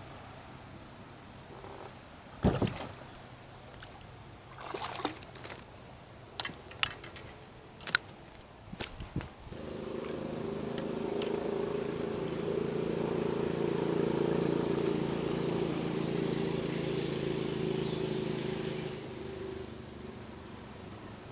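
Sharp knocks and clicks from landing a hooked goldfish into a small boat, the loudest about two seconds in. About ten seconds in, a steady low mechanical hum starts and runs for about nine seconds before stopping.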